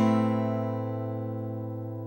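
Acoustic guitar chord, strummed once just before, left ringing and slowly fading.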